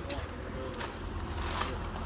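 A few footsteps crunching on gravel, roughly one every three-quarters of a second, over a low steady rumble.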